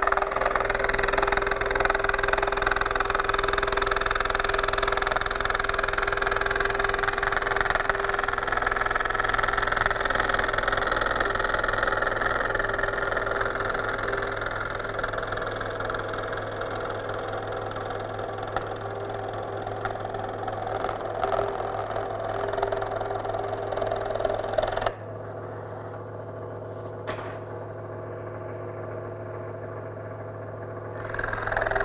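Scroll saw running and cutting through a sheet of Kydex thermoplastic: a loud, steady machine noise with a steady whine. About 25 seconds in, the cutting noise drops away sharply and a quieter steady hum is left.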